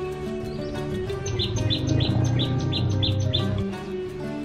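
Background music with steady held tones, and a bird chirping a quick run of about eight short, high notes through the middle.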